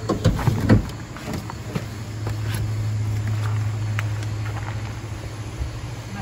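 Knocks and footsteps on a cargo van's floor in the first second as a person climbs into the back, then a steady low rumble that swells and eases off.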